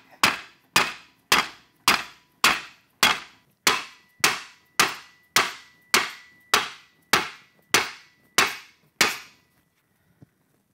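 A mallet striking a wooden block held against sheet metal clamped over a bending mandrel in a vise: about sixteen evenly paced blows, just under two a second, which stop about a second before the end, with a faint metallic ring behind them. The hammering forces a bend into the metal at the mandrel's edge.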